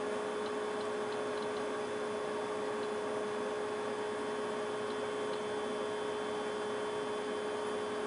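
Steady electrical hum with background hiss, with a few faint, irregularly spaced ticks.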